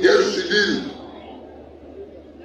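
A man speaking briefly for about the first second, then a pause.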